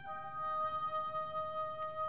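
Solo oboe playing a sustained note: right at the start it steps down to a lower pitch and holds it steadily.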